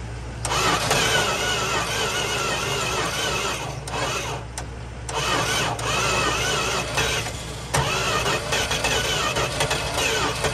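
The starter cranks the engine of a mid-1970s Dodge Dart Sport in long runs, easing briefly around four and seven seconds in, and the engine does not settle into an idle. It is starved of fuel through a carburetor the owner calls junk and says is leaking.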